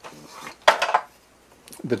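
An S-100 disk controller card being pulled out of the IMSAI 8080's card cage: one short, sharp scraping clatter of board and metal about two-thirds of a second in, with a few small clicks near the end.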